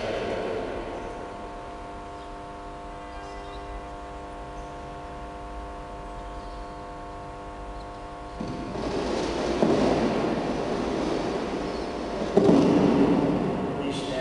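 A sustained musical chord of several steady tones, held for about eight seconds and then cut off. It is followed by two louder stretches of broad noise, the second starting suddenly near the end.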